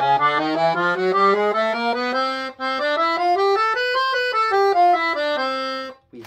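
Sonola SS5 piano accordion played on its bandoneon treble register, its low and middle reed sets sounding together. A run of single notes climbs for about four seconds and then steps back down, with a brief break a little before halfway.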